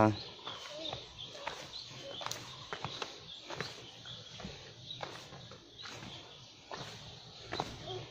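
Footsteps on stone trail steps, a soft irregular step about every half second to second, with faint voices in the background.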